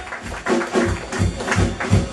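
Live jazz band playing an instrumental passage without singing, with a steady pulse of low bass notes and drum strokes.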